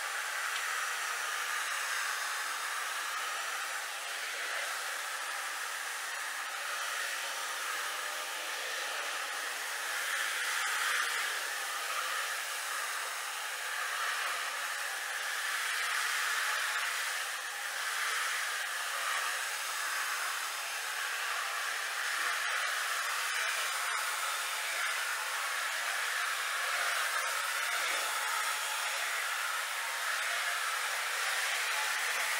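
Electric 175 rpm floor machine running steadily as it is worked over carpet for very-low-moisture cleaning: a continuous, even motor hum with a hiss over it.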